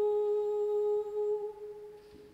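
A voice humming one steady note, which fades away over the second half.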